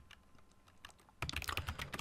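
Typing on a computer keyboard: after about a second of near quiet, a quick run of keystrokes.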